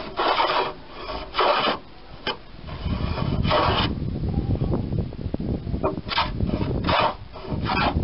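Small hand plane shaving the edge of a pine boat plank: about seven short rasping strokes, one bunch near the start and another from about six seconds in. A low rumble runs underneath from about three seconds in.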